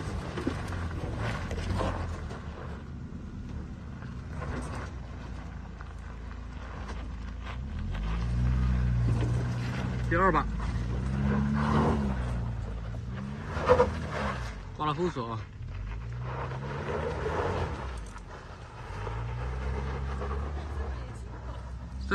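Tank 300 off-road SUV's engine revving up and down in repeated surges under load as it climbs a steep dirt slope, loudest in the middle stretch. A few brief shouts from onlookers come over it.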